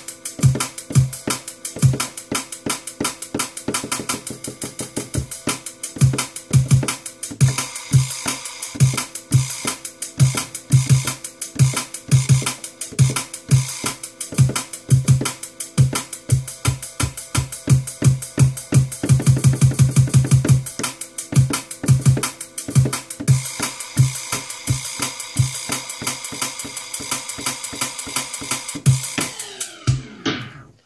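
A drum and bass beat of kick and snare hits, re-triggered from the hot cue pads of a Pioneer DDJ-SX2 controller in Serato, with quantize on snapping each hit to the beat. The rhythm is steady, with a fast roll of repeated hits about two-thirds of the way through, and the beat cuts off just before the end.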